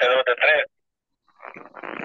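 Speech only, heard over a video call: a voice for the first half second, a brief dead gap, then talk resumes.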